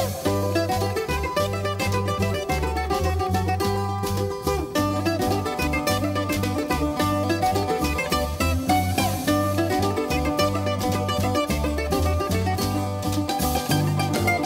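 Greek instrumental folk music led by a rapidly plucked bouzouki over a steady, rhythmic bass line.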